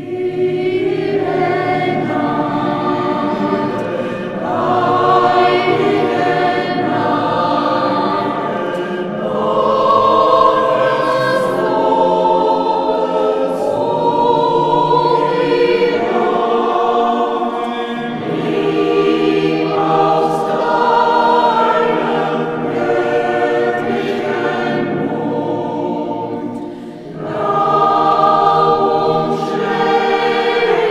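A mixed church choir singing together in sustained, flowing phrases. The singing sets in at the very start, with a brief break between phrases a few seconds before the end.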